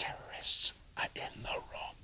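Whispered, breathy speech from a man: short hushed phrases with no clear words.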